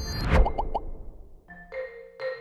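Intro jingle: a rushing swell of noise peaks under half a second in and is followed by three quick rising bloops. Then marimba-style mallet music resumes about one and a half seconds in.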